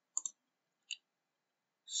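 Two short, sharp computer mouse clicks about three quarters of a second apart, with dead silence between them.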